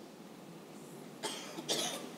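A short, faint cough a little over a second in, against quiet room tone.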